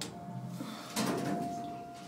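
Otis passenger elevator car machinery: a thin, steady whine, joined about a second in by a thud and a rush of noise that fades away.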